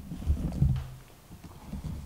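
Soft, low wooden knocks and handling noise from a Japanese hand plane (kanna) being gripped and turned in the hands, mostly in the first second.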